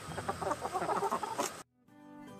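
A flock of hens clucking, cut off suddenly about a second and a half in.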